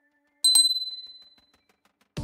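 A single high bell 'ding' sound effect, the notification-bell chime of a subscribe-button animation, struck about half a second in and fading away over about a second.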